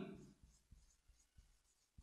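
Faint felt-tip marker writing on a whiteboard, near silence with a few soft taps of the pen. A man's voice trails off at the very start.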